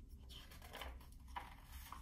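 Faint rustle of a hardcover picture book's paper pages being handled and turned, in a few soft brushes.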